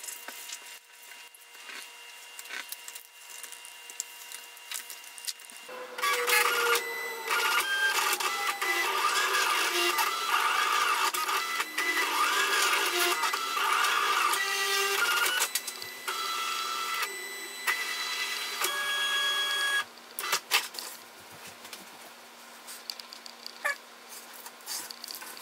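Silhouette Cameo vinyl cutter running, its motors whining in shifting, curving pitches with stop-start moves as it drives the cutting mat, from about six seconds in until it stops near twenty seconds. Before and after, quieter clicks and rustles of hands handling the mat and covering film.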